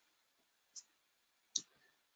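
Near silence broken by two faint clicks, the second a little louder, about three quarters of a second apart.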